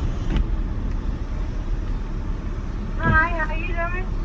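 Steady low rumble of a car idling, heard from inside the cabin. A voice speaks briefly about three seconds in.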